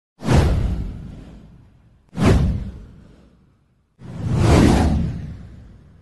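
Three whoosh sound effects on an animated title card, about two seconds apart, each fading away; the third swells in more gradually than the first two.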